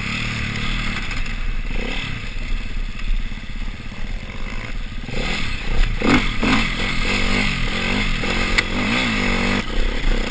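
Off-road trail motorcycle engine heard from the rider's helmet camera, easing off for a few seconds and then revving up and down repeatedly. From about halfway, clattering knocks come from the bike bouncing over rough, tussocky ground.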